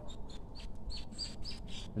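A small bird chirping: a quick series of short, high chirps, some rising slightly in pitch.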